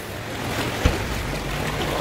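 Steady rush of sea water and boat noise as a small boat moves through a sea cave, with one short low thump a little before one second in.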